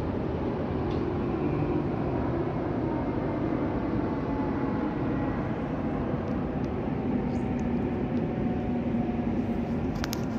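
Airplane passing overhead: a steady engine drone whose low tone slowly falls in pitch.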